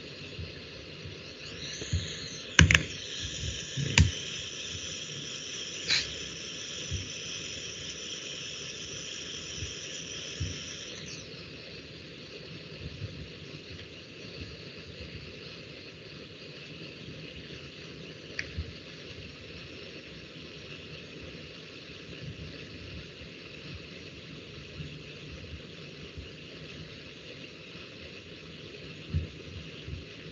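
Steady low hiss of room noise with a handful of sharp clicks, the loudest about three and four seconds in, and a faint high whine over the first ten seconds or so.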